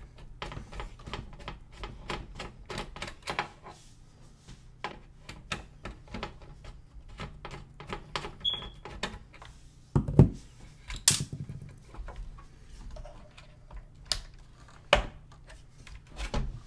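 Irregular clicks and knocks of plastic and metal as hands unplug cables and unlatch a graphics card from its slot inside a desktop PC case, with a couple of louder knocks about ten seconds in and again near the end.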